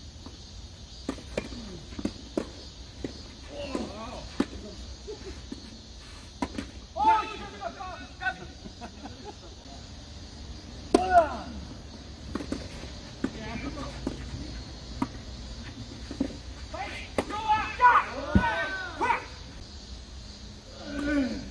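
Doubles tennis rallies: sharp pops of rackets striking the ball and ball bounces, coming every second or so, with players' voices calling out loudly a few times, the loudest near the end.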